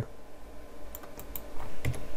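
A few separate keystrokes on a computer keyboard, answering a setup prompt in a terminal. They come about a second in and again near the end, over a faint low hum.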